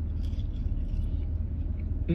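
Steady low rumble of a vehicle engine idling, heard from inside the cab, with faint chewing as a french fry is eaten.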